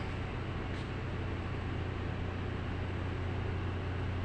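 Steady machinery drone aboard an offshore supply vessel, heard on its bridge: a constant low hum with an even hiss over it.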